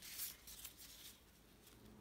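Faint crinkling rustle of thin plastic food-prep gloves as hands fold and press samosa pastry, strongest at the very start, then a few softer rustles.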